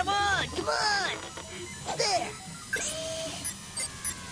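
Cartoon soundtrack: a character's short wordless vocal exclamations over background music, with a brief steady electronic tone about three seconds in.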